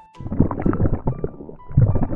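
Cartoon stomach-growling sound effect: an irregular rumble lasting about two seconds, swelling louder near the end. It signals that the child character is very hungry.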